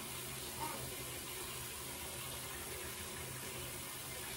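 Water running from a bathroom tap: a steady, even hiss.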